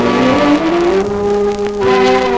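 Dance-band music playing from a 1940s radio transcription disc: the horns slide up in pitch over about a second and hold a long chord.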